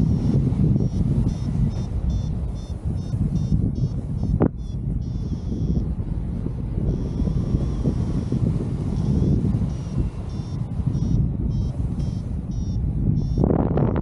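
Airflow rushing over the microphone in flight, with a paragliding variometer beeping in quick bursts of high tones, a sign that the glider is climbing in rising air. A single sharp click about four and a half seconds in.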